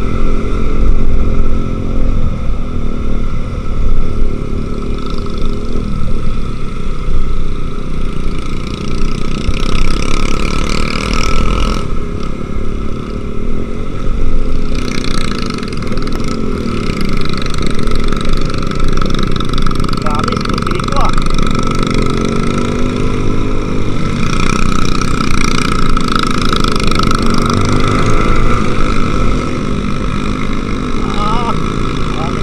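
Motorcycle engine running on a moving ride, with heavy wind buffeting the microphone. The engine's pitch rises and falls in the second half as the throttle changes through the curves.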